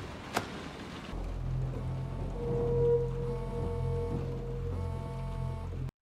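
Dark, droning background music: a deep low drone comes in about a second in, with a long held higher tone over it through the middle, after a single click near the start. It cuts off suddenly at the end.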